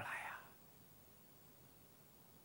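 A man's voice finishing the last word of a question and fading out within the first half second, then near silence: room tone.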